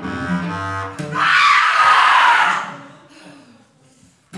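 Bass clarinet and cello in a contemporary improvised duet: low held notes in the first second, then a loud rushing noise without clear pitch for about a second and a half that fades away to near quiet.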